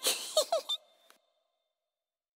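A short burst followed by two quick rising cartoon squeaks about half a second in, all over within the first second.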